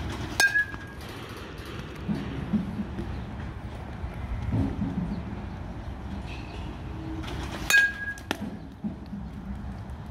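A baseball struck twice by a metal bat, about seven seconds apart, each hit a sharp crack with a brief metallic ring. A fainter knock follows soon after the second hit. A low steady rumble runs underneath.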